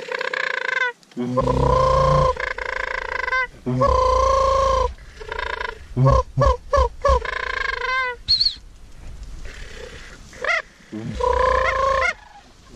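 Sandhill crane calls blown close by on a hunter's mouth crane call: long rolling, growled calls, then a quick run of about five short notes about six seconds in, then more long calls near the end.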